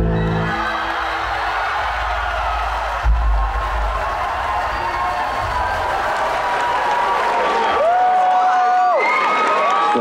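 Concert crowd cheering and whooping as a song ends; the band's last sustained notes stop about half a second in. Drawn-out rising and falling shouts stand out near the end, with a single low thump about three seconds in.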